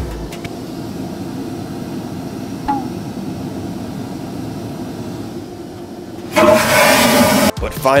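Airliner vacuum toilet flushing: a steady low cabin hum, then about six seconds in a sudden loud whoosh lasting about a second. The flush is what he calls "so loud".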